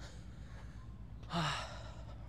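A man's short, breathy gasp about one and a half seconds in, over a steady low hum.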